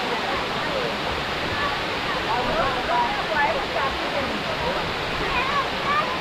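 Steady rush of a tiered limestone waterfall pouring into a pool, with faint chatter of people's voices mixed in.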